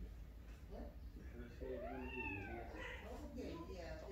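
Persian cat giving a long, drawn-out meow that rises and then falls in pitch, starting about a second and a half in, followed by a shorter call near the end.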